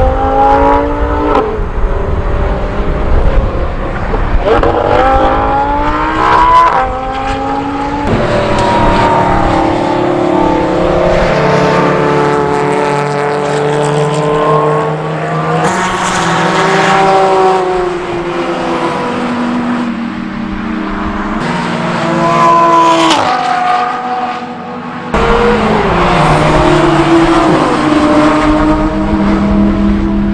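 Sports cars driving past at speed on a race circuit, among them an Audi R8 with its 5.2-litre V10: engine notes rise and fall as the cars accelerate and go by, with a few abrupt cuts from one pass to the next.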